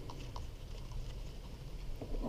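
Faint, scattered small clicks and scrapes of a hand handling the plastic bar-clamp tensioner knob on a Jonsered chainsaw, over a low steady background rumble.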